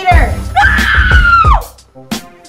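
A child's scream, held about a second at a high pitch and falling away at the end, over background music with a steady beat.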